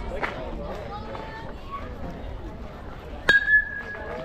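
A metal youth baseball bat hits a pitched ball a little after three seconds in: one sharp ping that rings on briefly at a single pitch, over spectators' voices.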